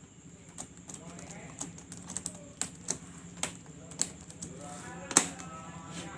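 Laptop keyboard keys clicking irregularly as a hand presses along a freshly refitted Dell Inspiron N4050 keyboard to seat it in its frame, with one sharper click about five seconds in.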